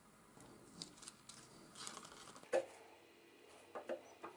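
Thin cardboard pieces being handled on a wooden table: faint rustling and sliding, with a sharp tap about two and a half seconds in and two smaller taps near the end.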